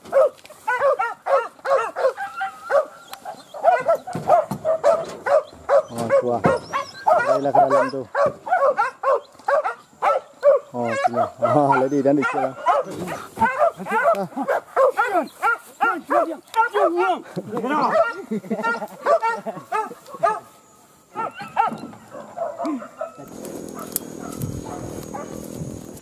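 Hunting dogs held back on the leash yelping and whining in a rapid, excited stream of high calls, with a few lower, longer calls among them. Near the end the calls die down to a quieter rustling noise.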